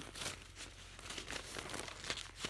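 Paper magazine pages rustling and crinkling as they are handled: a faint, irregular run of small crackles.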